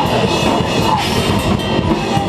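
Heavy metal band playing live, with the drum kit up close and loud: cymbal crashes and drums pounding over electric guitar.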